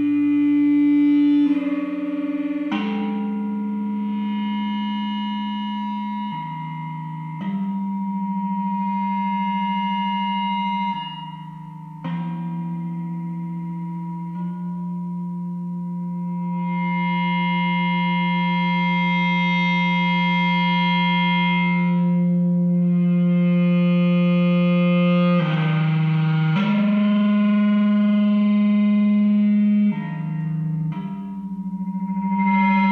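Prepared electric guitar sounded with an EBow, a 3D-printed arched ring coupling its 3rd and 5th strings: long droning, gong-like tones, made inharmonic by the ring's added mass, with no picked attacks. The pitch steps to new notes every second or few as notes are fretted, and in the middle one tone is held for over ten seconds while its upper overtones swell and fade.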